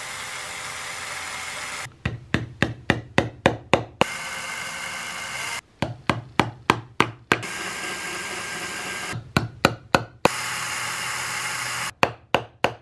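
A cordless drill running steadily as it bores small pin holes through the horn into the wooden plug, in four stretches that break off suddenly. Between them come three quick runs of light taps, about four a second, from a small hammer driving the pins in.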